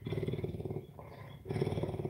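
A big cat purring: a low, rapid pulsing that breaks off for a moment about a second in and then starts again.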